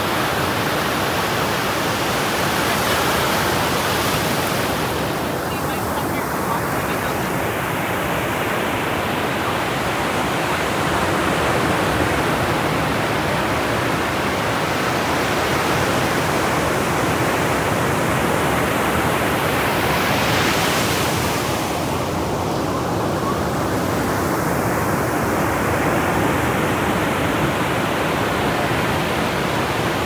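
Ocean surf breaking and washing in, a steady rush of churning whitewater that swells louder a few seconds in and again about twenty seconds in.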